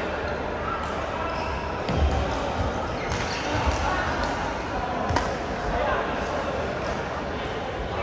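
Badminton play: several sharp racket-on-shuttlecock hits and low thuds of footwork on the court floor, over a steady chatter of voices in a large, echoing sports hall.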